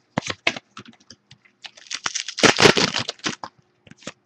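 A stack of 2011 Prestige football trading cards being flipped through by hand: a string of light clicks and snaps as the cards slide off one another, with a longer, louder rustling scrape about two seconds in.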